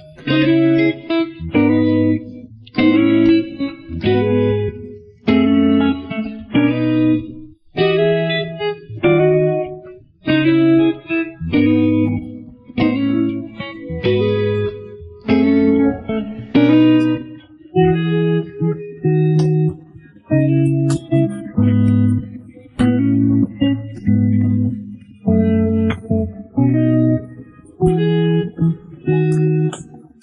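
Karaoke backing track, the vocals taken out of the original recording: guitar playing short chords in a steady, even rhythm over a bass line.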